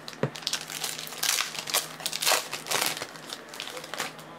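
Foil trading-card pack wrapper crinkling as it is handled and the cards are slid out, in irregular crackles, loudest around the middle.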